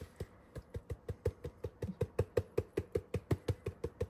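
Spice jar of dried parsley flakes being shaken over food: a quick, even run of light rattling taps, about six or seven a second.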